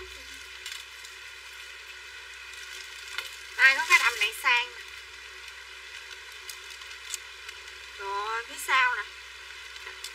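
A steady hiss of background noise, broken twice by short bursts of a woman's voice, about four and about eight seconds in.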